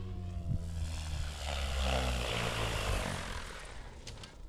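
Electric RC helicopter (Goblin RAW 500) coming in to land. The motor and rotor tone slides down in pitch, and a loud rush of rotor blades swells in the middle as it comes down close, then fades as the rotor winds down.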